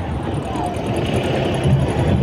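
Street noise: voices of people mixed with a vehicle engine running underneath, steady throughout.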